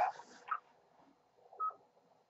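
Amateur radio receiver at the end of a check-in: a brief hiss as the transmission drops, then about one and a half seconds in a single short beep, like a repeater courtesy tone.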